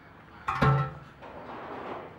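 A heavy strongman implement set down hard on the ground about half a second in: one sharp thud with a brief ringing tone. After it comes a rough, hissing scrape.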